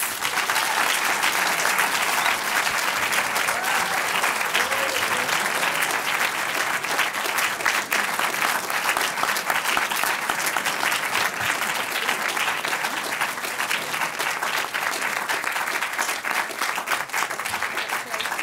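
Audience applauding, a dense steady clatter of many hands clapping.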